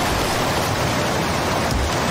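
A steady, loud rush of churning water and spray, a sound effect of a giant sea monster bursting out of the sea and engulfing the boat.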